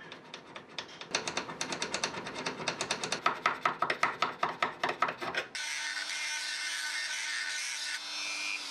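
Hand file cutting a slot in a small brass part held in a vise: rapid back-and-forth strokes, about five a second, growing louder. About five and a half seconds in the filing stops abruptly and a high-speed rotary tool runs steadily, its bit working in the brass slot.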